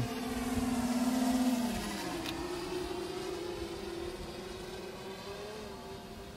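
Yuneec Typhoon H hexacopter's motors and propellers whining steadily as the drone flies at full speed. The whine is loudest about a second and a half in, shifts pitch at about two seconds, then slowly fades.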